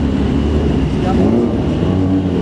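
Kawasaki ZX-10R sport bike's engine running at low revs as the bike rolls slowly closer, a steady low hum with voices talking faintly underneath.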